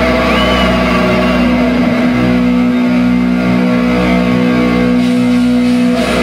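Live heavy metal band, distorted electric guitars holding a sustained chord that rings on steadily over a low bass drone. A brief high whine rises near the start.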